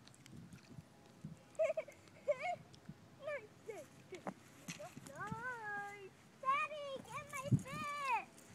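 Young children's high-pitched voices talking and calling out in short, indistinct phrases, faint and scattered, with a couple of small knocks.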